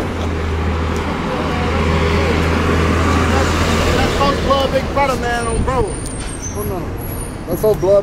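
A motor vehicle passing on a city street: a low engine rumble and road noise that build to a peak about three to four seconds in, then fade, with men's voices over it.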